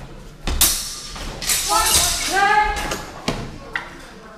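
A sword-fencing exchange: a heavy thud about half a second in, a clatter of blows, and two loud shouts, then two sharp knocks near the end.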